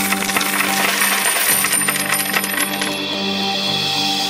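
Cascade of metal coins pouring and clinking, many rapid chinks that thin out about three seconds in, over background music with sustained tones.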